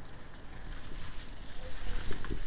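Low, fluctuating rumble of wind and handling noise on a handheld phone's microphone, with faint scattered clicks.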